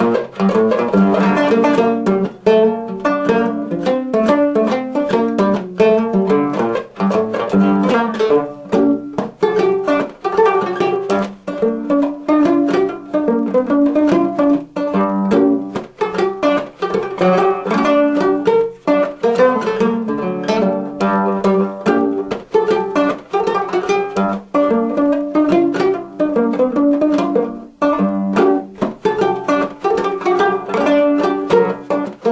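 Five-string banjo playing a reel: a fast, unbroken run of plucked notes.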